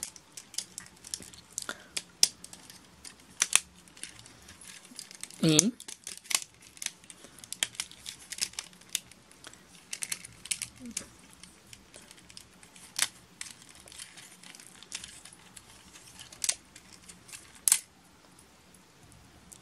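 Plastic clicks, ticks and snaps of a Transformers Bumblebee action figure's ratchet joints and panels being worked by hand, irregular with short gaps. A louder, brief low sound comes about five and a half seconds in. A sharp snap near the end sounds like a part breaking, though nothing broke.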